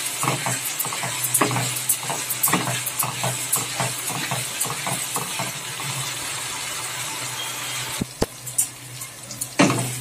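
Spiced onion-tomato masala sizzling in oil in a non-stick kadai while a spatula stirs and scrapes it in frequent strokes: the masala being bhuna-fried (koshano) until the oil separates. The stirring stops about eight seconds in with a couple of sharp clicks, and the sizzle goes quieter.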